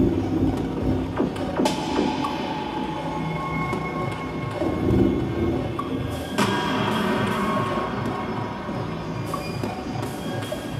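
Live electronic music played from a table of gear: dense layered sustained tones over low pulsing, with a sharp hit about two seconds in and another a little past the middle.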